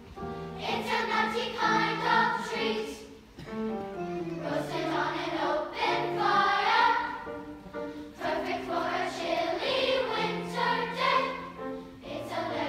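A large children's choir singing a slow song in several parts with piano accompaniment, heard from the audience seats of a school auditorium. The singing goes in phrases, dipping briefly between them.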